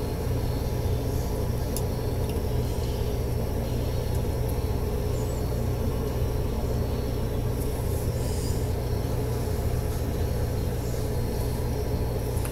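A steady low rumble and hum of background noise that holds even throughout.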